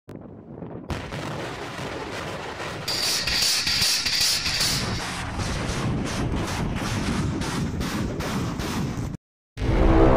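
TOS-1A heavy flamethrower system firing a salvo of 220 mm thermobaric rockets: a continuous rumbling roar broken by a rapid string of sharp blasts, with a hiss loudest a few seconds in. It cuts off just before the end, and music begins.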